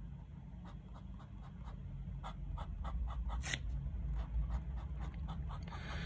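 Platinum 3776 Century fountain pen with a fine gold nib writing on notebook paper: a string of short, irregular scratchy strokes, somewhat louder from about two seconds in. It is the nib's light feedback on the paper, a fine nib with a slight drag.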